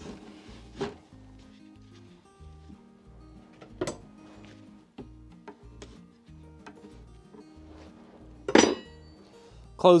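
Wooden hive frames clicking and knocking a few times as they are set and shifted in a wooden swarm-trap box, the loudest knock near the end, over steady background music.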